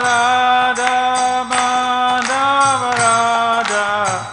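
Devotional chanting: a voice singing long held notes over a steady drone, with hand cymbals struck at uneven intervals.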